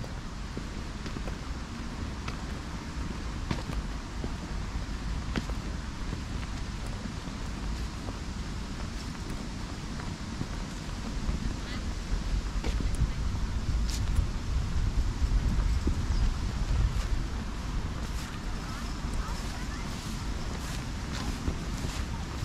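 Wind rumbling on the microphone, with scattered light clicks of footsteps on a tarmac path; the rumble grows stronger partway through.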